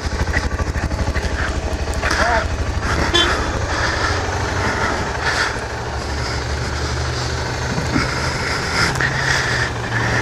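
Kawasaki KLR 650 single-cylinder motorcycle engine idling, a steady low pulsing note, with the note shifting slightly about six seconds in.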